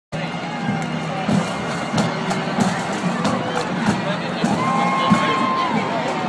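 Parade band music: a steady drum beat, about three strokes every two seconds, under sustained held tones, with a longer high note near the end, over the chatter of a crowd.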